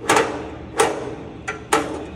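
Sharp metal clacks from the adjustable foot of a fold-down RV entry step as it is moved by hand: three loud knocks, each well under a second apart, with a fainter click just before the last.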